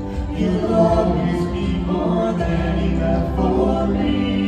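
A vocal trio of two women and a man singing together into microphones, holding long notes that shift in pitch.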